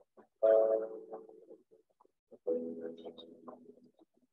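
Two drawn-out 'mmm' hums of approval from people tasting a canned soda, each about a second long, the second lower-pitched, played back through a video call.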